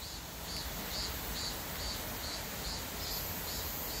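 Insects chirping in a steady rhythm, about three high chirps a second, over faint outdoor background noise.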